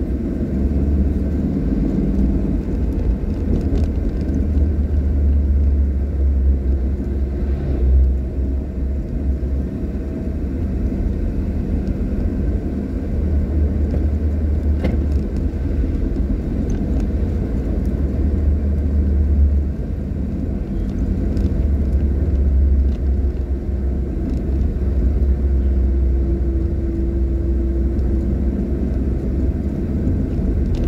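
Steady low rumble of a car driving on a paved road: engine and tyre noise.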